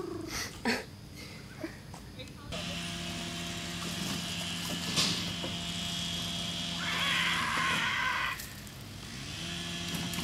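People shrieking in imitation of velociraptor calls during the first second, followed by a steady low hum with a brief burst of hiss near the end.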